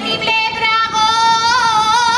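A woman singing solo, holding one long high note whose vibrato widens near the end, in the style of an Aragonese jota.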